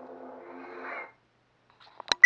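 A ProffieOS lightsaber's sound-font hum playing through its speaker, then swelling briefly as the blade is switched off (retracted), cutting off suddenly about a second in.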